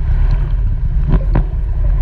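Steady, muffled low rumble of pool water heard through an underwater camera as a swimmer swims freestyle past, with two short knocks a little after a second in.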